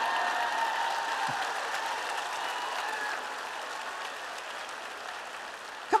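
A large audience applauding, loudest at the start and slowly dying away.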